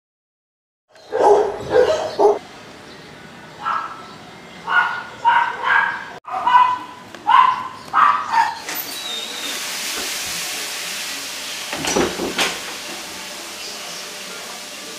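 A dog barking in a string of short barks, about a dozen of them, which stop about two-thirds of the way in. After that comes a steady hiss, with two sharp knocks close together near the end.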